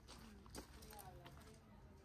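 Quiet outdoor crowd sound: faint chatter of nearby people with a few sharp footstep clicks on hard paving, the loudest about half a second in.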